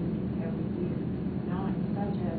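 Faint, indistinct talking voices over a steady low hum.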